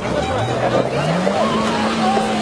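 A vehicle engine revving up: its pitch climbs over about a second, then holds steady, with excited voices over it.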